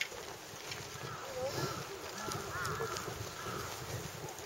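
Faint, indistinct voices of people in the distance, over a steady low background rumble.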